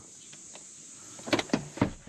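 Retractable cargo-area cover of a Subaru Outback being handled at its side latches: a faint sliding sound, then three sharp plastic-and-metal clacks close together about a second and a half in as the cover's end bar knocks into its latch slots.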